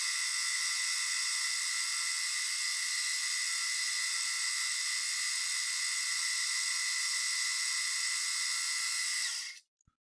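Milling machine spindle running with a small dovetail cutter cutting a dovetail into a small metal part: a steady high-pitched whir with several fixed tones, cutting off suddenly near the end.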